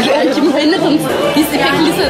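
A woman's voice over the steady chatter of a crowded dining hall.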